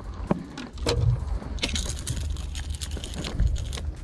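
A small snapper hooked on a topwater lure shaking and being handled: clicks and rattles of the lure and hooks, with a burst of rustling about two seconds in over a low handling rumble.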